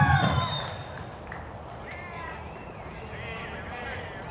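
A loud, high call falls away and ends in the first half second, with a low rumble under it. After that there are indistinct background voices of people talking.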